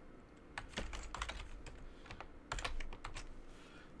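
Computer keyboard being typed on: a dozen or so quick, irregular keystrokes as a short word is typed into a code editor.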